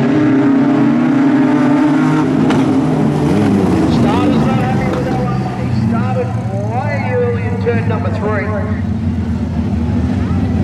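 A pack of wingless sprint cars racing at full throttle on a dirt track: a loud, steady engine drone that drops a little about halfway through.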